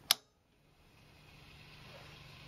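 A single sharp click of a switch being flipped on a Hughes & Kettner TubeMeister 18 valve amp head. After a short silence, a faint hiss and low hum from the amp slowly rise.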